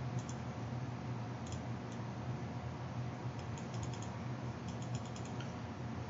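Faint, scattered computer keyboard clicks over a steady low electrical hum, as the video-analysis footage is stepped forward.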